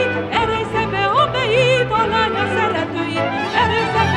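A woman singing a Hungarian folk song from Szék (Sic) in a wavering, ornamented line with wide vibrato, over sustained low accompanying notes.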